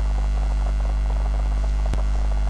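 Steady, low electrical mains hum, with a single short click near the end.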